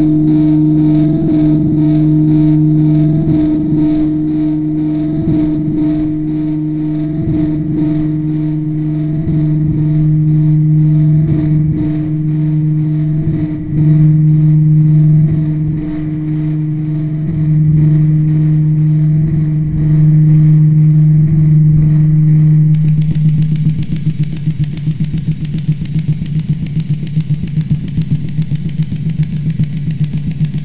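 Harsh noise music: a loud distorted drone held on one low pitch, pulsing unevenly. About 23 seconds in it gives way to a hissing, rapidly stuttering wall of static.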